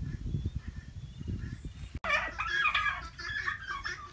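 Gusty wind rumbling on the microphone for about two seconds. It cuts off abruptly and is replaced by a run of overlapping poultry calls with turkey gobbles.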